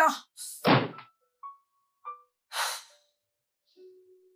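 A wooden interior door slammed shut: one heavy thud about a second in.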